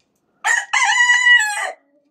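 A Pekin bantam rooster crowing once: a short, high-pitched crow starting about half a second in, a brief opening note then a held call of about a second that drops off at the end.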